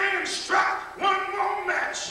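A man's voice shouting short, high-pitched, half-sung phrases into a microphone, amplified over a church PA: a preacher's chanted delivery.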